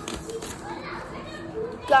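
Paper rustling as notebook sheets are flipped and handled, with a few brief, faint murmurs of a child's voice.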